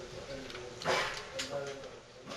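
A fluorescent-fixture starter twisted out of its socket by hand: a sharp click about a second in and a smaller one shortly after.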